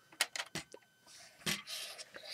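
Plastic Lego starship models handled in the hands: a few sharp clicks of plastic knocking together, then about a second of rubbing and scraping with one more click.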